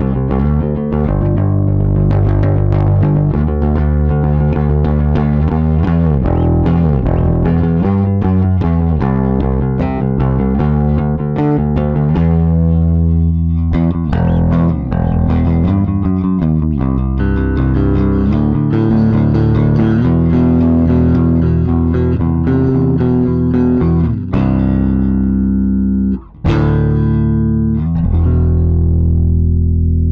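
Squier 40th Anniversary Gold Edition Jazz Bass played fingerstyle on its neck pickup alone, through a Blackstar Unity U250 bass amp's line out. It plays a busy, continuous line of clean bass notes that breaks off briefly about 26 seconds in.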